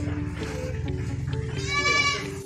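A goat bleats once near the end, a short, high, pitched call that is the loudest sound, over steady background music.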